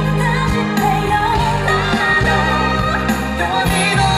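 Live pop song sung with a live band: a lead singer carries a wavering vocal line over steady bass, keyboards and guitar, with backing singers.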